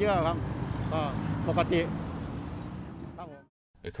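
Busy road traffic with a truck going past: a steady low rumble and hiss, with a high whistle that slides down in pitch in the second half, under brief snatches of a man's speech. It cuts off suddenly shortly before the end.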